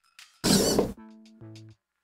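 Hobby servos of a Freenove Big Hexapod robot moving its body: a short burst of gear noise about half a second in, then a steady whine in two short stretches.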